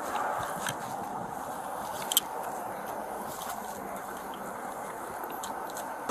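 Steady hiss of outdoor background noise picked up by a police body-worn camera microphone, with a few faint clicks and one sharper click about two seconds in.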